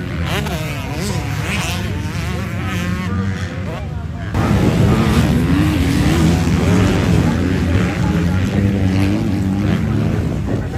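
Motocross bikes' engines revving hard on a dirt track, the pitch rising and falling with the throttle. About four seconds in the sound cuts abruptly to a louder, closer engine.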